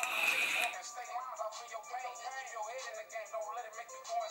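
Brief hiss of a draw on a sub-ohm vape, a Geek Vape Aegis X mod with a Smok TFV16 tank and single mesh coil, lasting under a second. Faint background music with a singing voice follows.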